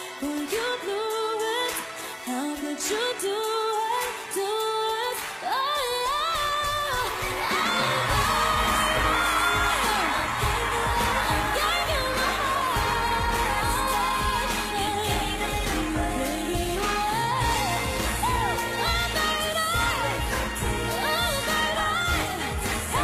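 A Christmas pop song with singing over a light accompaniment; about eight seconds in the full band with bass comes in and the song carries on fuller.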